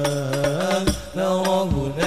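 Group of men singing an Arabic devotional song (sholawat) through a PA system, holding long ornamented notes. Sharp drum strokes, typical of hadroh frame drums, fall between the phrases.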